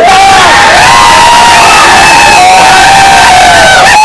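A group of men shouting and cheering together, very loud, with long drawn-out yells held over one another.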